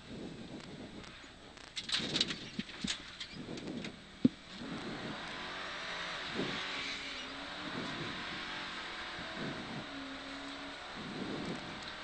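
Mercedes 500SLC rally car's V8 engine heard from inside the cabin, its revs rising and falling. A few clicks come about two seconds in and a single sharp knock just past four seconds. After that a steady hiss of tyres on the wet road runs under the engine.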